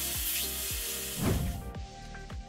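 Background music with a steady beat over the steady hiss of a handheld air plasma cutter cutting steel; the hiss cuts off near the end.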